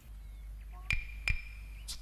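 Old kung fu film soundtrack: a steady low hum with two sharp clacks about a second in, a thin ringing tone held between them, and another clack near the end.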